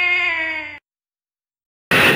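A long, drawn-out meow-like cry holding one pitch, fading and stopping under a second in, followed by silence.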